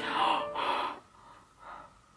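A woman gasps twice in quick succession, two sharp breathy intakes within the first second, in shocked disgust at a gross image. After that come only faint breaths.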